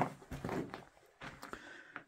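Footsteps on loose rock rubble and gravel, a few irregular crunching steps, louder in the first second and fainter after.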